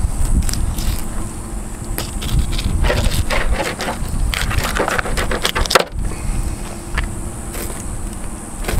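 Serrated knife cutting through a redfish's big scales and over its rib bones, making scratchy, crunching strokes. The strokes come in bunches, about three seconds in and again around five seconds in.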